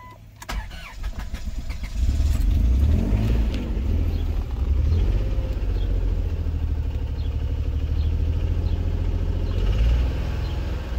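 Chrysler 3.8-litre V6 starting about two seconds in after a few clicks, then idling steadily. The idle carries faint light ticks, and the owner calls the engine knocking and running rough even though no misfires are counted.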